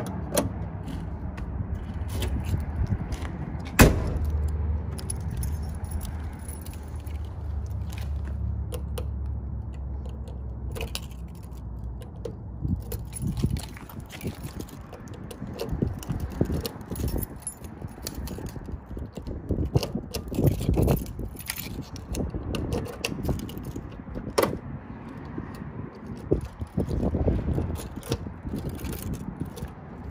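Car keys jangling on a key ring and clicking as a key is worked in and turned in the chrome driver's door lock cylinder of a 1970 Ford Mustang. The lock locks but will not unlock. A single sharp knock comes about four seconds in, and there is a low steady rumble through the first half.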